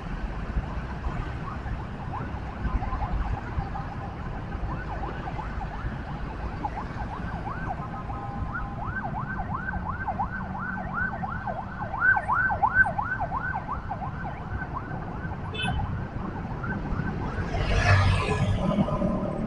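A vehicle siren in a rapid yelp, quick falling wails about three a second, that grows louder past the middle and then fades, over the steady rumble of road traffic.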